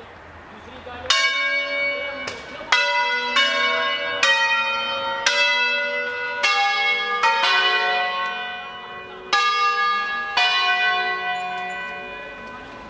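Five church bells tuned in F#3, cast by Ottolina of Seregno, swung full circle on wheels in the Ambrosian manner and rung as a solemn concerto. From about a second in they strike one after another in a shifting melodic order, each stroke ringing on under the next, with a brief lull just before nine seconds.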